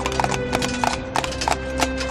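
Hoofbeats of a pair of Morgan horses in carriage harness, a quick, slightly uneven run of clip-clop strikes, about four or five a second, on a paved track, with held chords of background music underneath.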